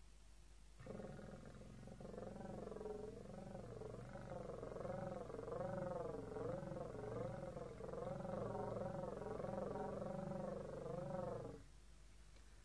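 Vermeulen flute, a straight-blown slide flute, sounding one sustained tone whose pitch swings smoothly up and down about one and a half times a second, with a rough low buzz beneath it. It starts about a second in and stops shortly before the end.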